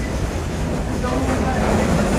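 Passenger train running along the track, heard from on board as a steady low rumble.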